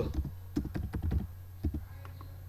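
Typing on a computer keyboard: a quick run of keystrokes through most of the first second and a half, then a couple more keystrokes near the end.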